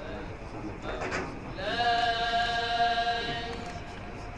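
Men's voices chanting, holding one long steady note from about halfway in, after a short burst of voice near the start.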